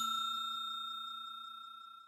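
Ringing of a notification-bell sound effect dying away steadily after being struck, then cut off abruptly at the end.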